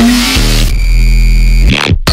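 Electronic bass music: a harsh, noise-heavy synth over deep bass with a few falling bass glides. It cuts out abruptly just before the end.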